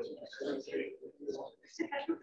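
Indistinct, muffled talking: a person's voice too unclear to make out words.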